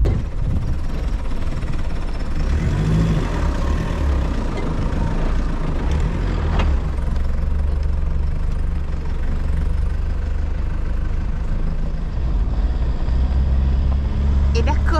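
Toyota Land Cruiser driving on a rough dirt track: a steady engine drone with tyre and road rumble, and a single short knock about six and a half seconds in.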